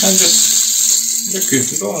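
Lángos dough deep-frying in hot oil in a saucepan, a loud steady sizzle that drops away near the end.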